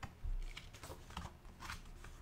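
Pages of a paperback book being turned by hand: faint paper rustling and brushing in a few short strokes, with a soft low thump about a quarter of a second in.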